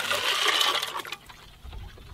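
Water splashing and churning in a plastic tub, loud for about the first second and then dying away, with a few small clicks and splashes.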